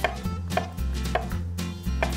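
Kitchen knife chopping mushrooms into small cubes on a wooden cutting board, with a sharp knock of the blade on the board about every half second.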